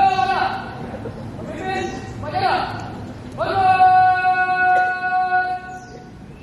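A voice shouting a drawn-out drill command for a salute, in four loud sung-out calls, the last held on one steady pitch for about two seconds.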